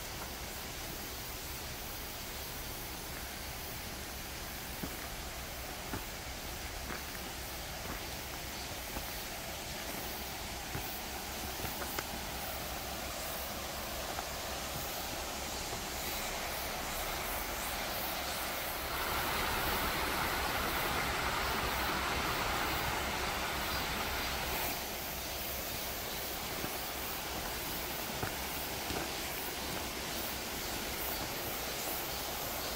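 Steady rushing of a stream flowing beside a forest path. It swells louder for several seconds past the middle, then drops back, with faint footsteps and twig snaps on the trail.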